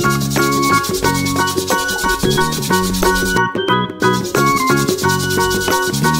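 Background music: a bright instrumental children's tune of short, quick melody notes over a steady, fast rhythmic beat.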